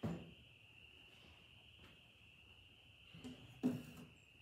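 A few soft wooden knocks and scrapes near the end as a wooden frame is lifted out of a Layens beehive, over a faint steady high-pitched tone.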